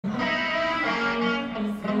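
Live electric guitar chords ringing out, held and changing every half second or so.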